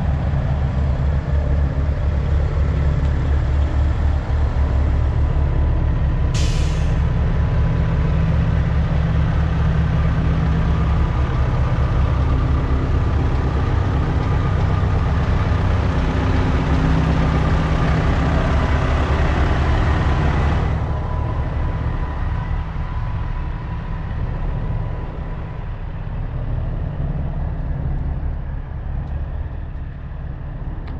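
Idling semi-truck diesel engines, a steady low drone. About six seconds in, a sharp burst of air hiss from a truck's air brakes sets off a hiss that holds until about two-thirds of the way through, then cuts off suddenly.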